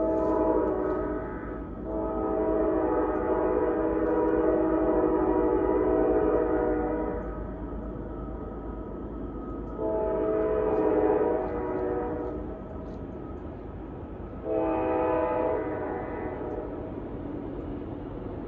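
Nathan K5LA five-chime air horn on a CSX AC44CW diesel locomotive sounding four blasts, the second one long, as a grade-crossing warning. A steady low rumble of the approaching train runs underneath.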